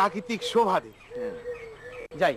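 Birds calling, with a person's voice in the mix; the short calls come at the start and again about half a second in.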